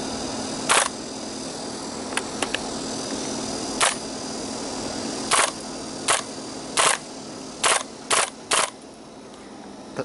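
Army Armament G36C gas blowback airsoft rifle firing about eight sharp shots, spaced irregularly and coming closer together in the second half, with a few light clicks of the action about two seconds in. It is set to semi-auto, but a faulty internal catch lets it run on in full-auto.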